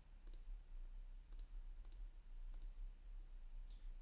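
Faint computer mouse clicks, about four of them spread a second or so apart.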